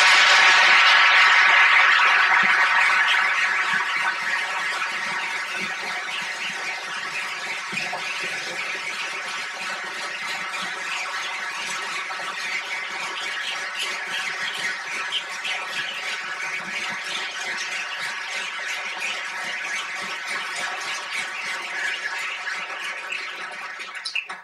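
Audience giving a standing ovation: sustained applause, loudest in the first couple of seconds, then settling to a steady level of clapping.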